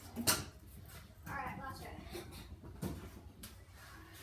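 A kick scooter hitting a concrete patio during a flat-ground trick attempt, a sharp clack just after the start, then another knock near three seconds.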